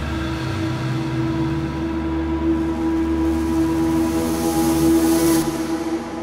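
A steady, train-like droning tone under a rushing hiss that swells louder and cuts off abruptly about five and a half seconds in: a sound-design drone in a thriller soundtrack.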